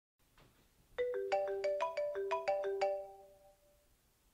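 Mobile phone ringtone: a quick melody of about ten bright, plucked-sounding notes starting about a second in and ringing out, the start of a repeating ring.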